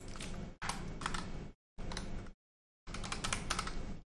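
Typing on a computer keyboard: four short runs of keystrokes with brief pauses between them.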